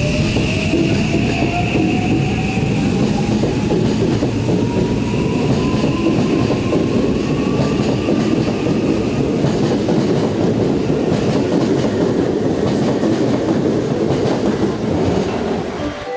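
Electric commuter train pulling away past the platform: the motor whine rises steadily in pitch over the first half as the train gathers speed, over a continuous rumble of wheels on rail.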